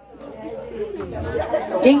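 Several people talking at once in a jumble of overlapping voices, growing louder toward the end.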